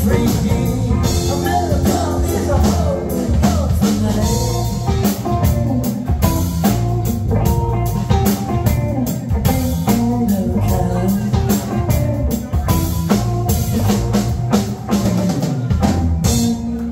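Live rock trio playing: electric guitar with gliding, bent lead notes over electric bass and a drum kit.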